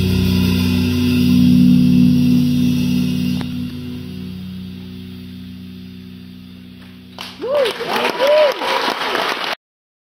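A live band's closing chord ringing out and slowly fading. About seven seconds in, the crowd breaks into applause and whooping cheers, and the recording cuts off suddenly just before the end.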